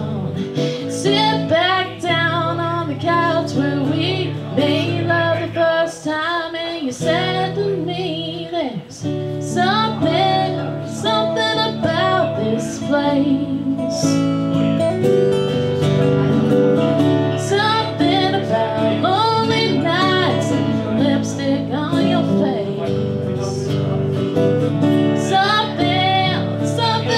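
Two acoustic guitars strummed together, with a woman singing over them.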